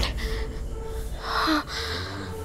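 A woman's shocked gasp, a short breathy intake about a second and a half in, over a steady held note of background music.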